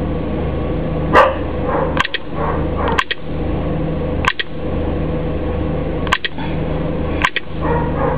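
Steady electrical hum with about six sharp clicks at uneven intervals of roughly a second.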